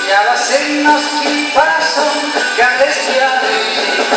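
Live folk band playing a song, with diatonic accordion, fiddle, guitars and drum kit.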